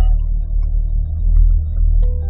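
Corvette C8's 6.2-litre LT2 V8 idling with a steady low rumble as the car creeps to a stop, heard from inside the cabin.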